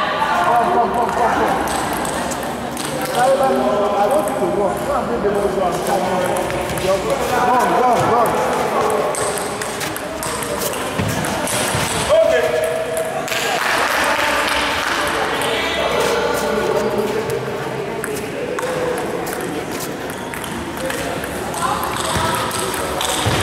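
Table tennis balls clicking against bats and the table in rallies, heard over people talking.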